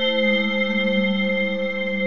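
ROLI Equator2 software synthesizer playing a sustained, echoing chord of three held notes. The lowest note slides down a little in the first second.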